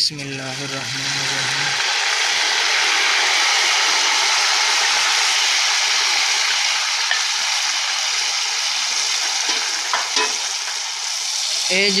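Chopped tomatoes dropped into hot cooking oil and dark-browned onions in a karahi, setting off a loud, steady sizzle that builds over the first couple of seconds; the tomatoes' water spitting in the hot oil makes it sizzle hard.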